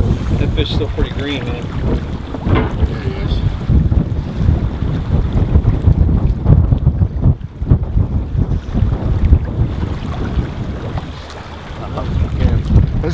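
Wind buffeting the microphone, a gusty low rumble that runs on unbroken, with faint voices in the first few seconds.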